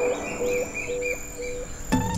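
Cartoon jungle ambience: a bird chirping in a quick run of short calls, a few each second, over a steady thin high tone and soft background music.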